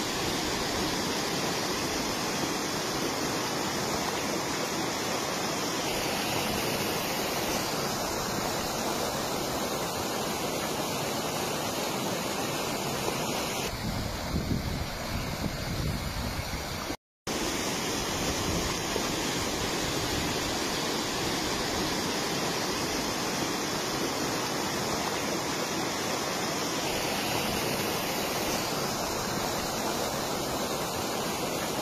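Torrent of muddy flash-flood water rushing steadily, a dense roar with no break. About 17 seconds in it cuts out for an instant and resumes.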